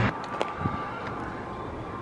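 Outdoor background noise: an even hiss with a faint steady high tone through the first half, and a single small click about half a second in.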